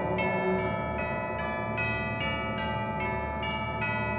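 High school concert band playing a soft, sustained passage: held chords underneath, with bell-like notes struck about twice a second on top.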